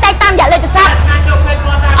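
Motorcycle engine idling with a low, steady rumble under a woman's talk.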